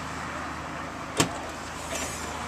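A 2008 Ford Escape's V6 engine idling steadily outdoors, a low even hum under a wash of open-air noise. A single sharp click about a second in.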